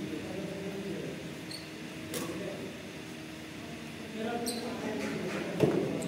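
Badminton shoes squeaking briefly on the court floor three times, over a murmur of voices in a large hall, with one sharp thump near the end.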